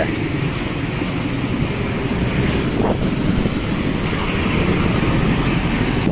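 Street traffic: a steady hum of passing vehicles, with wind on the microphone, getting a little louder over the last couple of seconds.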